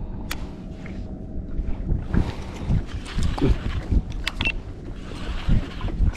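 Water slapping and lapping against a plastic kayak hull on choppy sea, with wind buffeting the microphone; the splashes get busier about two seconds in.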